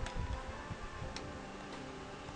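Plastic handling clicks as a smartphone is pushed into the clamp of a drone remote controller's phone holder: two sharp clicks about a second apart.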